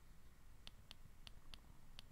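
Faint clicks of a TI-Nspire CX graphing calculator's touchpad and keys being pressed: about five short clicks, starting under a second in and spaced roughly a quarter second apart.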